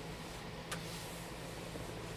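Quiet room tone with a steady low hum and one faint click about three-quarters of a second in.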